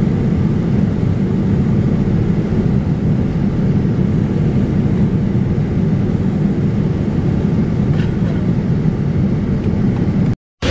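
Steady low roar inside an airliner cabin, the engines and airflow running evenly throughout.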